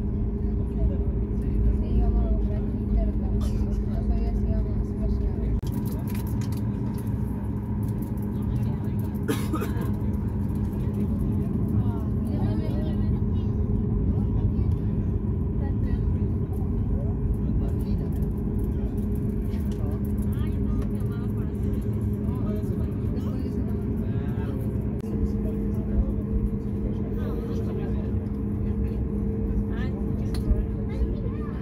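Steady cabin hum of a Boeing 737 MAX 8 taxiing, heard from inside the passenger cabin, its pitch stepping up slightly about 25 seconds in. Faint passenger voices murmur underneath.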